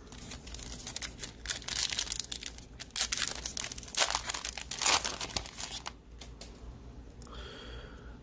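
A plastic trading-card pack wrapper being torn open and crinkled: a dense run of crackling tears and crinkles through the middle that dies down about six seconds in.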